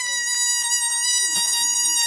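Air let out through the pinched, stretched neck of an inflated rubber balloon: a loud, high squeal held at one steady pitch.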